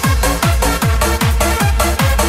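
Electronic dance music from a club DJ mix: a fast four-on-the-floor beat with a kick drum about every 0.4 s and a short bass note on each offbeat, under a busy layer of synths and hi-hats.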